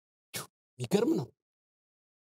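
A man's voice saying a short word or two, starting with a sharp consonant-like burst, with the sound cut to dead silence around it.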